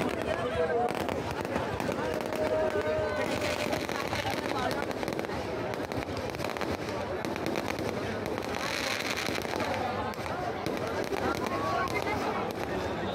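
Aerial fireworks going off in a dense stream of pops and crackles, the crackle thickening a few seconds in and again later, over the voices of a crowd talking and shouting.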